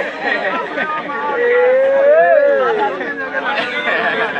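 Several people talking and calling out over one another, with one long drawn-out call, rising then falling in pitch, about a second and a half in.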